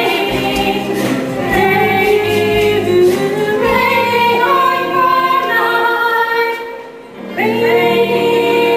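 Live stage-musical music: a chorus of voices singing long held notes with a band. The sound thins out briefly about seven seconds in, then the voices and band come back in together.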